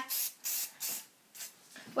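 Aerosol hairspray sprayed onto hair in several short hissing bursts, the first ones the strongest and the later ones fainter.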